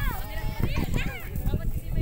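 Children's high-pitched shouts and calls during a ball game, strongest a little under a second in, over a steady low rumble.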